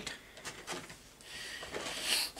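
Faint handling noises: a few soft knocks, then a short rustle as things are moved about.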